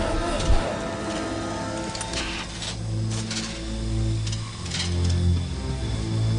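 Dark orchestral film score with sustained low tones, over a string of short mechanical clicks and hisses as Darth Vader's mask is lowered and locked into place.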